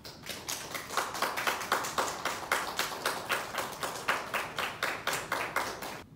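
A small audience applauding: a dense run of separate hand claps that starts just as the piano piece ends and stops after about six seconds.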